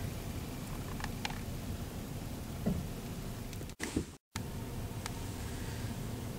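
Steady low rumble of a dump truck's engine running. The sound breaks off for a moment about four seconds in.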